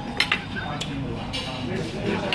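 A metal spoon clinking against a dinner plate several times in short, sharp strikes, over a murmur of voices.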